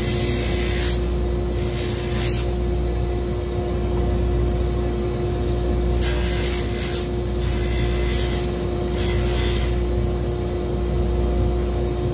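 A drum sander running with a steady hum. About five short bursts of sanding hiss come as leather welts are pressed against the spinning abrasive drum, scuffing off the shiny grain side so glue will stick.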